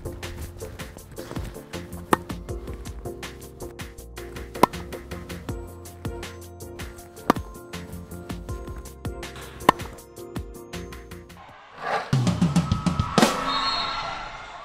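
Tennis racket striking the ball on forehand volleys: four sharp hits about two and a half seconds apart, over background music with a steady beat. Near the end the music changes to a short closing sting.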